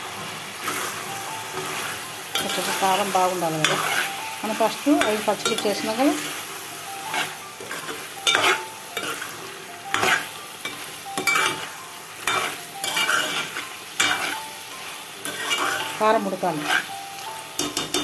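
A steel ladle stirring chicken curry in a metal cooking pot, with repeated irregular scrapes and knocks against the pot over a steady sizzle of frying.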